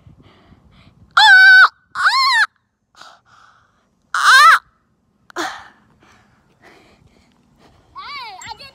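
A child's high-pitched wordless shouts, four in about four seconds: the first held on one note, the next two rising and falling, and the last short.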